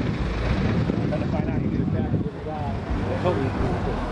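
Indistinct voices of people talking nearby over a steady low rumble of outdoor background noise.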